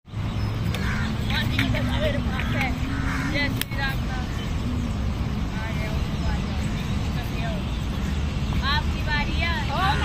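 Many birds chirping and chattering in the trees, the calls coming in quick runs of short rising and falling notes, busiest near the end, over a steady low background rumble.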